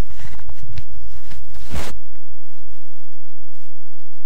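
Close rustling and scraping with a low rumble for about two seconds, the loudest scrape near the end of that stretch, then only faint scattered ticks.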